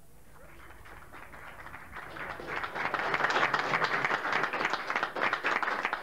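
An audience applauding: faint at first, swelling to full, steady clapping about two seconds in.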